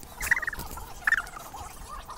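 A cat's short, wavering warbled cries, two bursts about a second apart.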